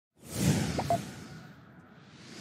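A whoosh sound effect for an animated intro, swelling up quickly from silence and fading away over about a second.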